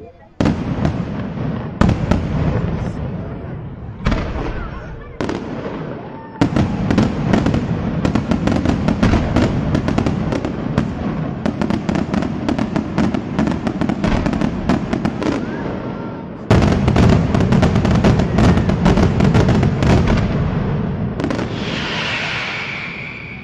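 Daytime fireworks display: a few separate loud bangs in the first six seconds, then a continuous rapid barrage of bangs and crackling from about six seconds in. The barrage gets louder again around sixteen seconds in and thins out near the end.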